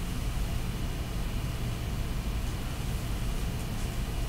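Steady room tone: a continuous low hum with a faint hiss, no distinct events.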